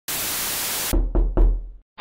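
Sound-design sting for an animated logo: a loud burst of even hiss for just under a second, cut off by three heavy, deep knocks in quick succession that fade out.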